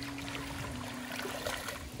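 Pond water lapping and trickling at the bank, stirred by a hand in the shallows just after a fish has been let go.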